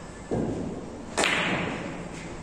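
Carom billiard play: a dull knock about a third of a second in, then a sharp, louder clack of hard balls a little over a second in, ringing off briefly.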